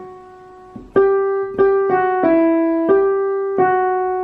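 Digital piano played with the right hand: a slow single-line melody of about six notes, starting about a second in, each note struck and left to ring.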